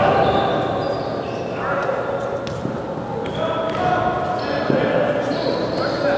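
Echoing indoor soccer game in a large sports hall: players calling out, with a few sharp knocks of the ball being kicked.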